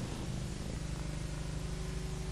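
Steady low hum with light hiss: the background noise of an old film soundtrack. A faint steady tone joins it just under a second in.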